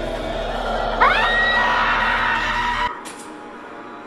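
Horror-film soundtrack: a music bed, then a sudden shrill scream-like shriek about a second in that sweeps up in pitch and holds steady, cut off abruptly near three seconds, leaving only a faint background.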